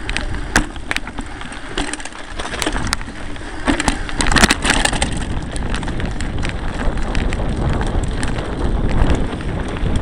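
Mountain bike rolling over a rough dirt and stone trail, heard close up from the rider's camera: a steady tyre rumble with rattling clicks and knocks from the bike over bumps, busiest about four to five seconds in.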